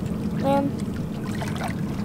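Seawater surging and sloshing in a narrow crevice between jetty rocks, a steady wash, with one short vocal sound from a person about half a second in.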